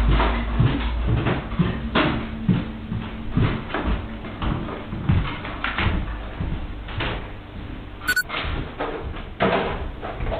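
Tinny, narrow-band security-camera audio of a series of knocks, thumps and footsteps as a man comes down wooden stairs and moves about a bar room. A short sharp click about eight seconds in.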